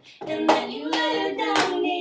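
A pop song playing: a sung melody line with handclaps on the beat, after a brief drop-out at the start.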